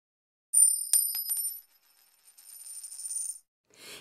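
Intro sound effect: a high metallic ring, like a coin dropped on a hard surface, with a few quick clicks in its first second, then a fainter rattle that fades out.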